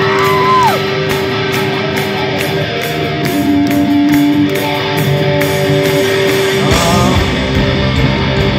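Live rock band: electric guitar holding long sustained notes, with one note bent downward about half a second in. Near the end the bass and drums come in, and a voice rises over them.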